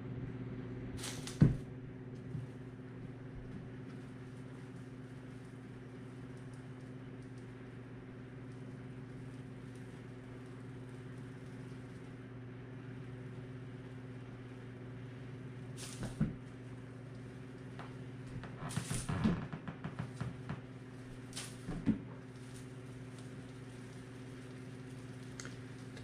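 A steady low electrical hum under scattered light knocks and rustles as cats pounce and land on a hard floor and bat at dangled palm fronds. The sharpest knock comes about a second and a half in, with a small flurry of them around twenty seconds in.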